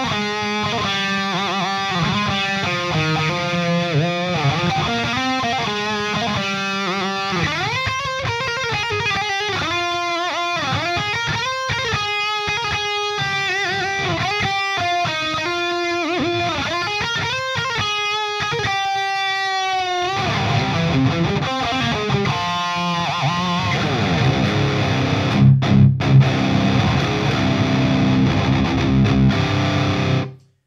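Distorted electric guitar played through the All-Pedal Devil's Triad overdrive pedal. It starts with a melodic lead line of sustained, vibrato-shaken notes, then switches about twenty seconds in to a low, heavy rhythm riff with a few sharp accented stops.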